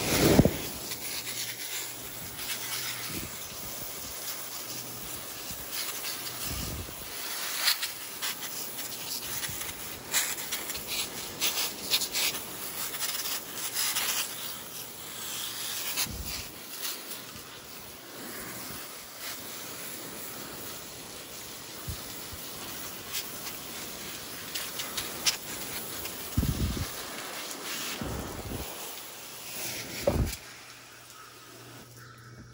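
Hose spray nozzle hissing as a fine jet of water sprays and spatters across orchid leaves, washing scale insects off, with a few low bumps from the nozzle being handled.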